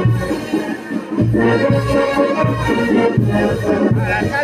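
Live band music for dancing, with sustained melody lines over a steady, evenly pulsing bass beat.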